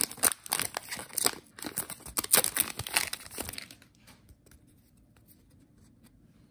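Foil wrapper of a hockey card pack being torn open and crinkled, a quick run of sharp crackles that stops about four seconds in.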